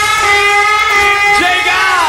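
Live rock band performance with held high notes and a pitch bend near the end, over backing that has lost most of its bass and low drums for the moment.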